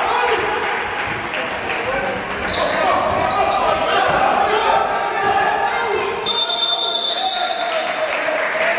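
Indoor basketball game in a large, echoing gym: a ball bouncing on the hardwood court under a steady mix of players' and spectators' voices. Brief high squeaks come a little after two seconds in, and a steady high tone lasting about a second comes near the end.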